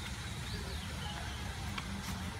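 Outdoor background noise: a steady low rumble, with a faint high chirp about half a second in and a light click near the end.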